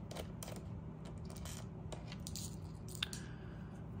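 Screwdriver turning a screw out of a PowerBook 3400c's plastic bottom case: faint, scattered small clicks and ticks, with one sharper click about three seconds in.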